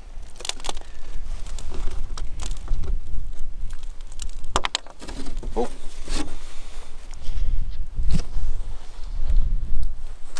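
Cement backer boards being handled and shifted by hand: a few scattered knocks and scrapes at irregular moments over a low, uneven rumble like wind on the microphone.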